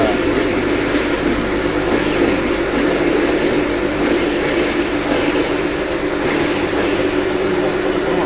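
Electric grinding mill running steadily under load, grinding chicken into a paste. A constant motor hum with a dense whirring noise over it.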